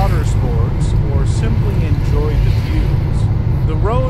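Car driving through traffic, heard from inside the cabin: a steady low rumble of road and engine noise. A voice talks over it, with no words picked out.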